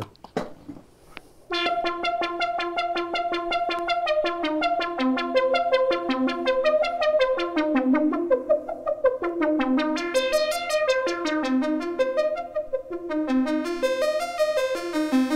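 Analog modular synthesizer (Synthesizers.com, Moog-style) playing a quick repeating pattern of bright, buzzy notes from two oscillators through the Q107 state variable filter's low-pass output. The filter cutoff is turned by hand, so the notes grow brighter about two-thirds of the way in. A few soft clicks of patch cables come just before the notes begin, about a second and a half in.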